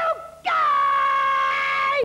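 A woman shouting "Hey, you guys!", the short "you" breaking off at once and "guys" drawn out into one long, high call held for about a second and a half.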